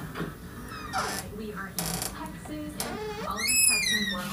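Faint voices in the background with a few soft clicks, then a short, high-pitched squeak near the end.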